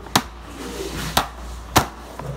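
Three sharp clacks of a hard plastic eyeshadow palette as its lid is shut and the case is knocked down on the table. The first comes near the start and the other two follow about a second and half a second apart.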